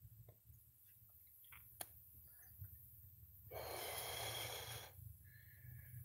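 Mostly quiet, with a few faint clicks and one breath-like exhale lasting over a second, about three and a half seconds in.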